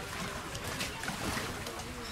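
Choppy lagoon water lapping against moored small boats and the shore, with wind on the microphone.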